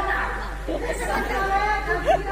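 Performers' spoken stage dialogue amplified through a public-address system, over a steady low hum.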